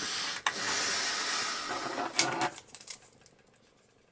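Hands handling small plastic and metal parts: a rustle lasting about two seconds with a click about half a second in, then a few light clicks as a crocodile clip and hose nozzle are taken up, fading away.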